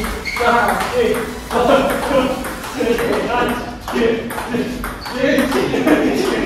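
Table tennis ball struck back and forth in a fast, continuous rally: paddle hits and table bounces follow one another in quick succession, about ten strokes in six seconds, with players' voices between them.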